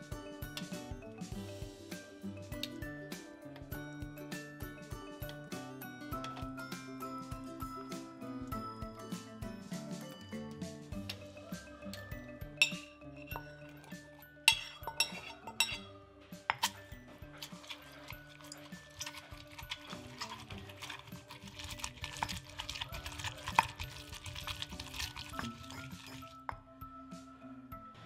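Background music over kitchen sounds. Metal tongs and a spoon clink against a ceramic plate as dried red chilies are taken out and scraped into a stone mortar, with a few sharp louder clinks. Then comes a stretch of a pestle pounding and grinding the chilies in the stone mortar.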